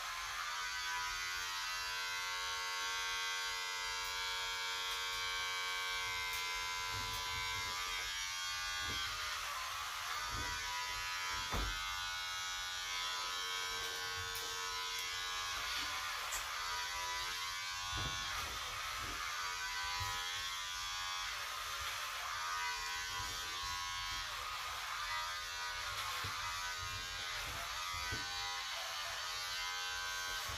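Electric hair clippers buzzing steadily as they cut a child's hair, the pitch wavering more in the second half as the blades work through the hair.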